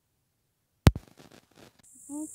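Dead silence, then a single sharp click about a second in, followed by faint rustling. Near the end a steady, high chirring of crickets sets in.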